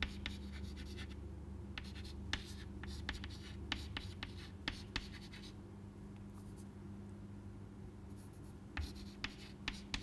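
Chalk writing on a blackboard: short scratches and sharp taps of the chalk as letters are written, easing off for a few seconds after the middle and picking up again near the end. A steady low hum lies underneath.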